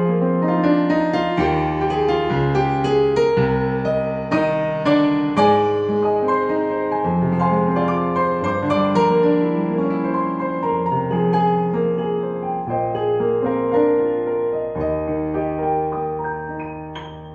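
Roland FP-30X digital piano playing its SuperNATURAL acoustic piano tone: a slow two-handed piece of chords and melody over bass notes held for a second or two at a time.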